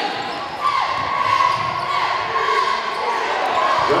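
Basketball being dribbled on a hardwood gym floor as players run up the court, with a long high squeal through the middle.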